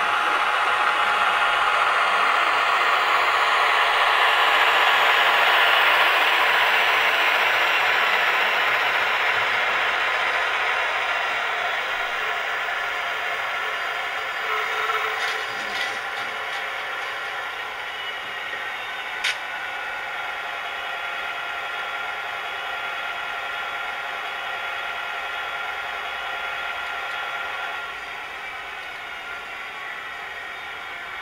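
Diesel engine sound from a sound decoder in a model diesel locomotive, played through the model's own small speaker as it runs on the layout. It is a steady run of several tones with no deep bass, loudest a few seconds in and then slowly fading, with a few light clicks in the middle.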